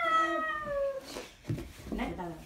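A high-pitched voice holds one long, slowly falling 'aah', ending about a second in, with a small knock shortly after.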